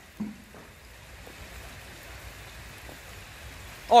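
Steady rain falling on pond water and wet ground, an even hiss, with one brief faint sound about a quarter second in.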